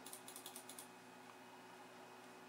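Faint, light clicking of a computer's controls while a document page is brought up and zoomed: a quick run of about seven sharp clicks in the first second, then stillness.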